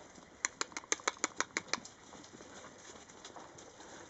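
A quick patter of about ten sharp taps over a second and a half, about a second in: Rhodesian Ridgeback puppies' claws and paws scrabbling on the taut fabric of a raised mesh dog cot as they play.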